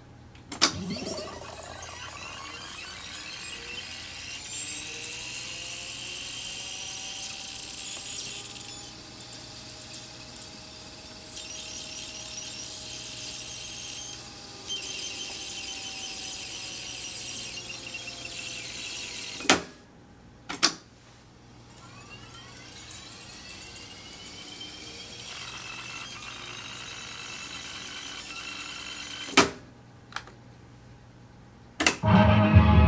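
Akai GX-77 reel-to-reel tape deck fast-winding its tape: a steady whirring hiss whose pitch glides slowly as the reels turn. The transport mechanism clunks as the wind starts, twice about two-thirds of the way in as it stops and starts again, and once more near the end as it stops.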